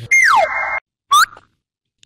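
Cartoon comedy sound effects: a falling whistle-like glide over a steady tone that cuts off abruptly after under a second, then a short, quick rising whistle.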